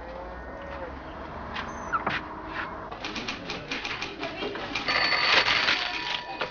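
Fast clatter of typewriters and office machines, with a telephone ringing near the end.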